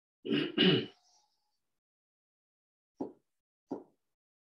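A person coughing twice in quick succession, followed by two faint, short throat noises near the end.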